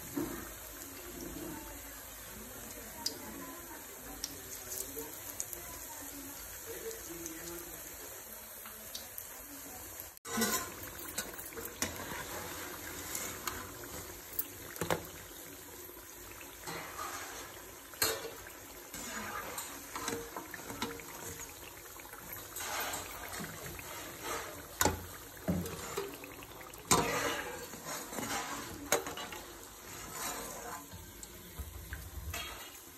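Hot oil sizzling around battered fritters deep-frying in a pan. The sound cuts and comes back louder about ten seconds in. After that come scattered clicks and scrapes of a metal spoon against the pan as the fritters are turned and lifted.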